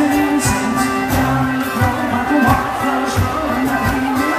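Folk dance music played by a band, with held melody notes over a steady beat.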